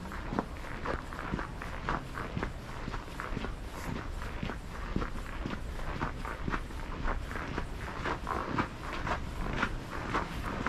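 Footsteps crunching on a snow-covered sidewalk at a steady walking pace, about two steps a second, over a steady low rumble.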